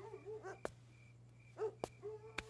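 Faint, short, arching animal calls, dog-like, come in a cluster at the start and once more about a second and a half in. Two sharp clicks are heard, over a low steady hum.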